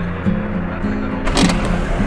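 Music with a stepping melody plays over the steady road rumble inside a moving car, with a brief sharp noise about one and a half seconds in.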